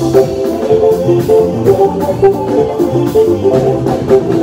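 Electronic keyboard played in the style of a Makossa lead guitar: quick, repeated plucked-sounding notes over a moving bass line and steady drums.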